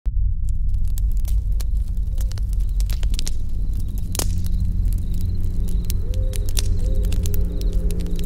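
Campfire crackling with many sharp, irregular pops over a steady low drone; faint sustained tones come in about halfway through.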